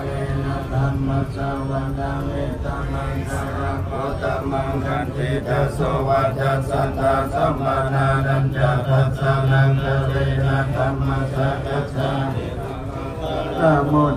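A group of Theravada Buddhist monks chanting Pali verses in unison through microphones, on a low, steady held pitch with continuous syllables.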